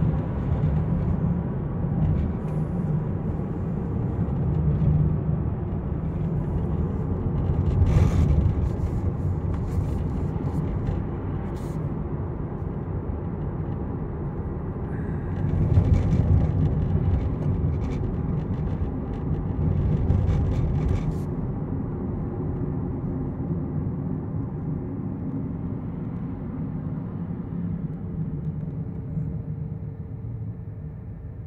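A Kia's engine and road noise heard from inside the cabin: a steady low drone that grows fainter as the car loses speed. It is the sign of a car that will not accelerate, a power loss with no service engine light on. A few short clicks or rattles come through in the middle.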